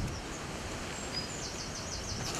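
Steady outdoor background noise with a few short, high bird chirps.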